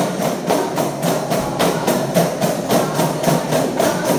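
Aravanas, large one-sided frame drums of wood and animal skin, beaten together by a group in a steady rhythm of about four strokes a second.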